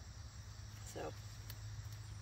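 Crickets chirping steadily, with a low steady hum underneath.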